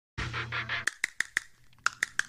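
Intro jingle music: a short noisy opening over a low hum, then a run of quick, short high notes, about six a second, in two groups of four with a brief gap between them.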